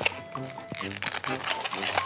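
Latex modelling balloons rubbing and squeaking as two long balloons are twisted together, over light background music with a steady beat.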